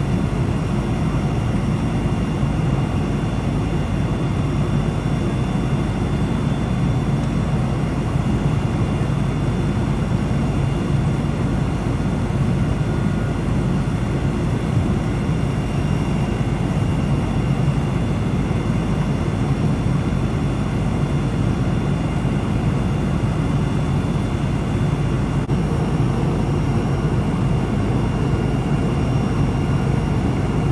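Steady low engine drone of fire apparatus idling at the scene, even and unbroken throughout.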